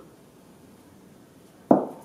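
A hand working a freshly cracked egg into flour in a ceramic mixing bowl, soft and faint, with a single sharp knock near the end.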